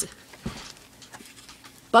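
A spiral-bound art journal being handled on a desk: a soft knock about half a second in, then faint paper rustling and small ticks.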